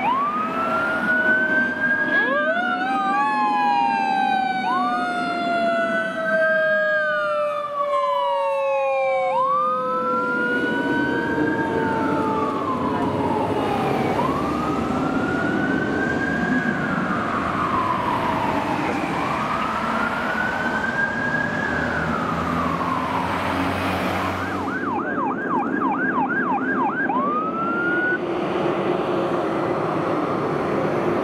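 Fire ladder truck's siren on a wail, rising and falling about every five seconds. Through the first half a second, lower siren tone glides slowly down underneath it. Near the end it switches briefly to a fast yelp before returning to the wail.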